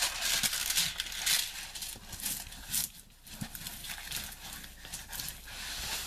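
Clear plastic wrapping on a rolled diamond-painting canvas crinkling and rustling as it is handled, with scattered light clicks and taps. Busiest in the first second or so, dropping off briefly about halfway through.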